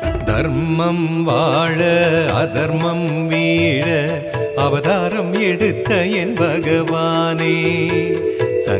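Devotional Krishna song music: a wavering melodic line over percussion strokes.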